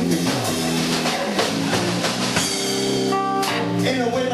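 Live blues band playing an instrumental passage: electric guitar over bass and a drum kit keeping a steady beat.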